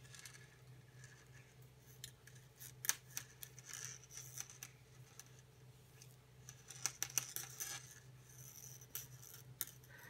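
Metal circular knitting needle clicking and scraping as cast-on stitches are slid along the needle and cable: scattered light clicks, the sharpest about three and seven seconds in, and short scraping hisses. A steady low hum runs underneath.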